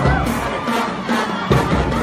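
Drum and lyre marching band playing over a cheering crowd, with sharp drum strikes at the start and again about a second and a half in.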